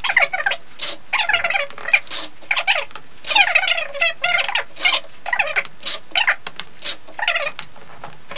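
Sticky tape being pulled off its roll and pressed down in a series of short, squeaky, crackling rips, about a dozen of them.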